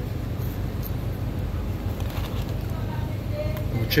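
Steady low hum with faint voices in the background.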